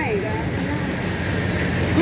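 Steady low hum of street traffic, with a voice trailing off in the first half-second.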